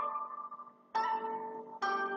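Background music of a plucked string instrument, slow single notes each ringing out and fading: one about a second in and another near the end.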